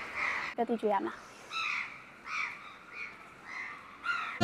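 A brief voice just before the one-second mark, followed by about four faint, hoarse bird calls spaced roughly half a second to a second apart.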